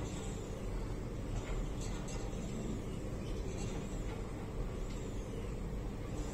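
Steady low hum and hiss of room noise, with a few faint clicks from a seated row machine's lever arms as it is pulled through repetitions.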